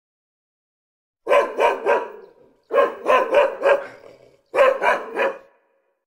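A dog barking in three bursts of three barks each, the bursts about a second and a half apart.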